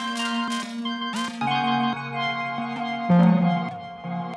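Modular synthesizer music: sustained pitched synth tones with plucked-sounding attacks and a short upward pitch glide about a second in. About three seconds in, the sound drops to a lower, louder note.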